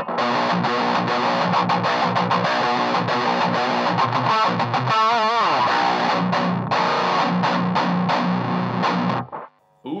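Heavily distorted electric guitar through a Revv Generator 100P amp, its aggression switch on red, playing a tight djent riff with the contour switch (a mid scoop) still engaged. About halfway through, a held note wavers and then slides down. The playing stops about a second before the end.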